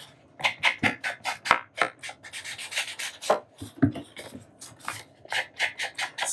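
Round foam ink blending tool rubbed over the edges of a sheet of patterned paper to ink them, a quick run of short brushing scrapes, about three to four a second.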